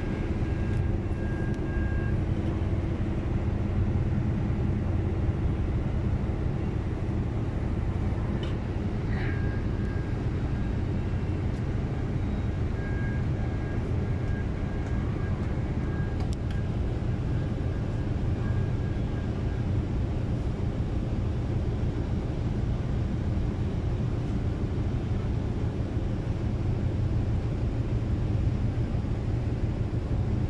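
Low, steady rumble of the engines of the large passenger ferry MV St. Pope John Paul II as it pulls away from the pier.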